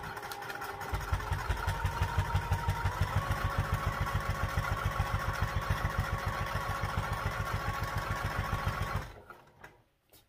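Domestic electric sewing machine running steadily, sewing a line of top stitching through layered fabric: rapid even needle strokes over a motor whine that picks up speed slightly about three seconds in, then stops about nine seconds in.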